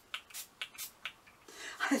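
Hand-held spray mist bottle squirting water in quick short hisses, about four in the first second.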